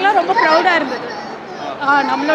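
Only speech: women talking close to the microphone, their words running on almost without a break.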